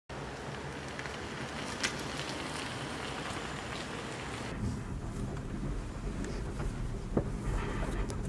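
An even hiss at first, then about halfway through a low steady rumble of road and tyre noise inside a moving Peugeot iOn electric car, its motor all but silent.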